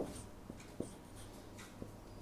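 Marker writing on a whiteboard: faint, a few short strokes with light taps of the tip on the board.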